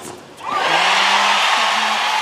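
A tennis ball struck once at the very start, then a big stadium crowd bursting into loud, steady cheering and applause about half a second in as the match-winning point ends.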